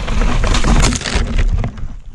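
Mountain bike rattling and crunching over a rough, rocky trail, with wind rumbling on a helmet-camera microphone. It ends in a crash: the clatter breaks off a little past a second in, followed by a few knocks as the rider goes down.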